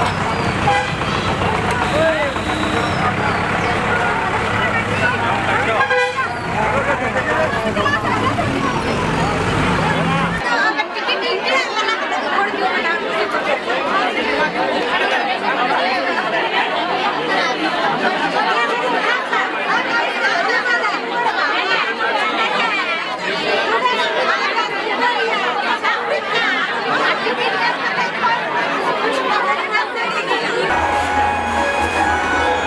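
A large crowd talking at once, a dense babble of many voices. For the first ten seconds or so a low traffic rumble lies under it, then the rumble stops abruptly.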